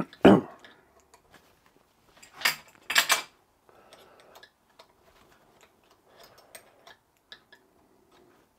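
A throat clear at the start, then hand tools working on a steel shaft coupling: two sharp metal clinks about two and a half and three seconds in, followed by faint clicks and scrapes as a long Allen key turns the coupling's screws tight.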